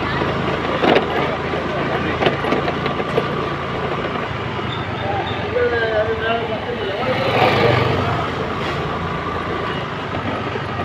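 Busy city street traffic at night: engines running steadily, with voices around the middle and a vehicle passing close, loudest about seven and a half seconds in.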